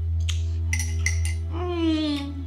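Teaspoon clinking against a ceramic tea mug as it is stirred: about four light clinks, over a steady low hum. Near the end a woman's voice glides down in pitch.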